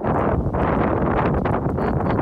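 Wind buffeting the phone's microphone: a loud, steady rumbling rush of noise that starts suddenly.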